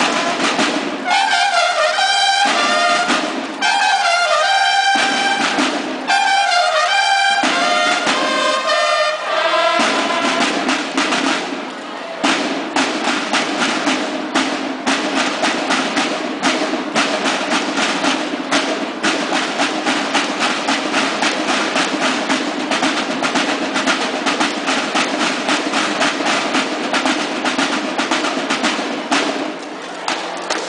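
Banda de guerra drum and bugle corps: for about the first ten seconds the bugles play short fanfare phrases over the snare drums, then the bugles stop and the snare drums carry on alone with a fast, steady march cadence.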